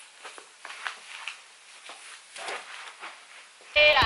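Soft scattered knocks and rustling of shoes being moved about and set down on wooden cupboard shelves. Background music starts suddenly near the end.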